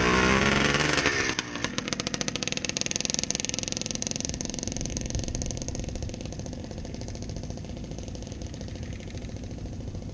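Dirt bike engines: one runs loud with its pitch falling over the first second, then the level drops suddenly and a rapid train of exhaust pulses carries on, slowly fading.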